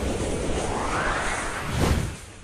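Whoosh sound effect of an animated logo sting: a swelling, rising sweep that peaks sharply near the end.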